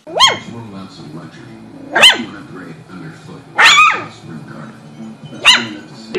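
A young puppy giving four short, high-pitched barks, one about every two seconds, each rising and then falling in pitch.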